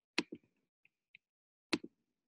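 Clicks at a computer: a quick double click, two faint ticks, then another double click near the end.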